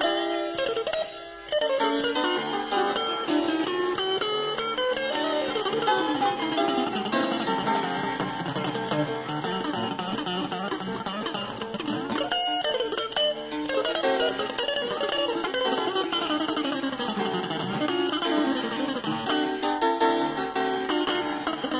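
Live jazz duo of archtop guitar and piano playing, with quick runs of notes climbing and falling and a brief break about a second in.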